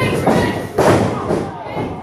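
Two heavy thuds of wrestlers' bodies landing on the ring mat, the second under a second after the first, over shouting voices from the crowd.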